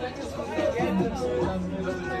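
Background music with several young people's voices chattering over it, no clear words.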